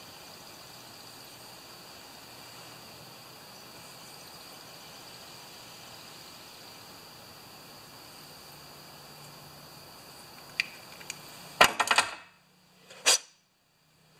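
Quiet room tone with a steady faint hiss for most of the time. Near the end there are a few faint clicks, then a short cluster of sharp clicks and knocks, then the sound drops suddenly to dead silence with one more click inside it.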